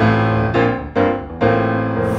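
Piano chords in a live acoustic song, struck about twice a second, each one ringing on until the next.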